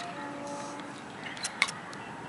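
A few light clicks about one and a half seconds in, from a small plastic toy boat being handled, over a faint steady hum.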